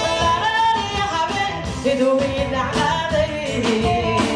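A Somali song played live by a band with trumpet, electric guitar, drums and keyboard, with a woman singing lead into a microphone.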